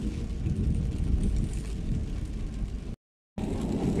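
Car cabin noise while driving on a rain-soaked road: engine and wet tyres in a steady low rumble. It cuts out for a moment about three seconds in, then picks up again.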